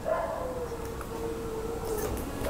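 An animal's long, drawn-out call that falls a little in pitch just after it starts and then holds steady.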